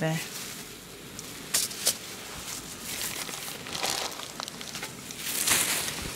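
Food sizzling and crackling in a frying pan over a gas flame, with two sharp clicks about a second and a half in and a louder hiss near the end.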